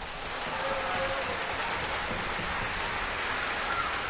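Audience applauding steadily after an orchestral performance.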